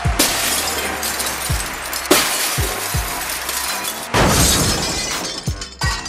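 Glass-shattering sound effects: three loud crashes about two seconds apart, each dying away, over music with a deep bass-drum beat.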